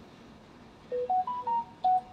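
A short electronic jingle of about five clean beeps, beginning about a second in, climbing in pitch and then stepping back down, in the manner of a phone's notification tone.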